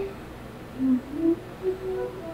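A voice humming a slow tune in a few short, separate notes, some sliding slightly in pitch.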